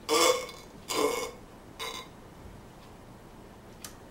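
A man burping three times in quick succession, each burp shorter and quieter than the last.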